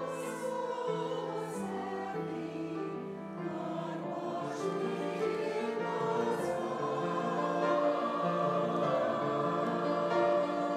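Mixed church choir of men's and women's voices singing with piano accompaniment, growing slightly louder toward the end.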